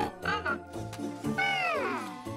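Loona robot pet's synthetic voice: a short call, then a longer call that slides down in pitch, over background music.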